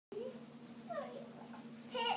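A small child's faint, brief vocal sounds: a short squeal that rises and falls about a second in, over a steady low hum.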